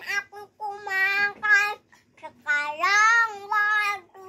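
A toddler singing wordlessly in a high voice: two held, slightly wavering phrases, the second longer.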